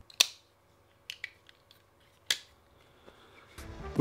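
Giant Mouse Ace Grand liner-lock folding knife being worked open and shut in the hand: sharp metallic clicks of the blade, a loud one just after the start and another a little past two seconds in, with fainter ticks between.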